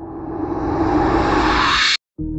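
A whoosh riser sound effect: a rushing swell of noise that grows steadily louder and brighter, then cuts off abruptly just before the end.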